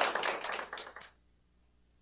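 Audience applauding, the claps thinning out and then cutting off suddenly about a second in.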